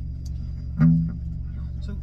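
Electric guitar plucked once about a second in, a low chord that rings briefly and fades, over a steady low hum.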